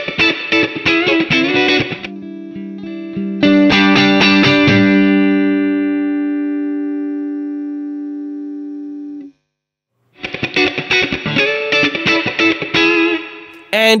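Electric guitar played with a pick: a quick, funky picked rhythm, then a chord struck and left to ring for several seconds before it cuts off suddenly. After a moment of silence the quick picked rhythm starts again.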